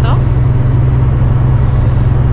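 Semi truck driving at highway speed, heard from inside the cab: a steady, loud, low engine and road rumble.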